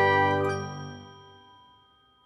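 The closing chord of an outro jingle ringing out, with a bright chime about half a second in, then fading away within a second and a half.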